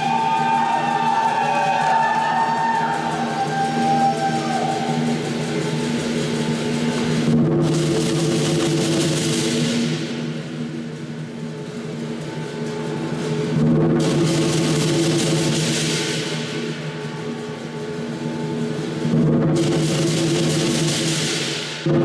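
Lion dance percussion: a big drum, gong and cymbals playing continuously, the gong's ringing tones sustained underneath. The crashing cymbals break off briefly about every six seconds, and a wavering high tone sounds over the first few seconds.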